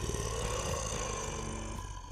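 Engine and propeller of a single-engine light aircraft in flight: a steady, rapidly pulsing drone, easing off slightly toward the end.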